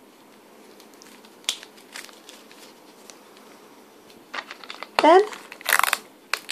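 Wrapping paper rustling and crinkling as it is folded over a flat gift, with two light clicks early and more handling later. Near the end comes a short, loud rasp as clear sticky tape is pulled off the roll.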